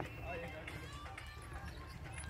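Faint, distant voices over a steady low outdoor rumble.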